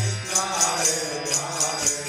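Kirtan: a group of voices chanting a devotional mantra to a steady beat of small metal hand cymbals, struck about four times a second. A low held tone underneath stops about a quarter second in.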